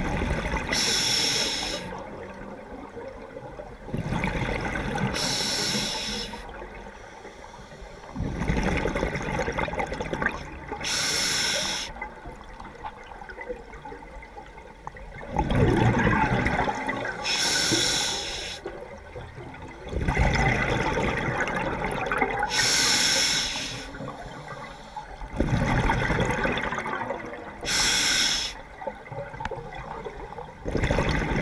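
Scuba diver breathing through an open-circuit regulator underwater: a short hissing inhalation, then a longer bubbling rumble of exhaled air, repeating about once every five to six seconds.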